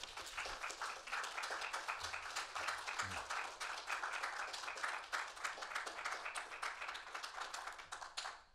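Audience applauding, a dense, even patter of many hands clapping that goes on steadily throughout.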